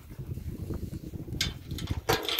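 Cattle moving close by on loose dirt: irregular low hoof thuds and shuffling, with a short hiss about one and a half seconds in.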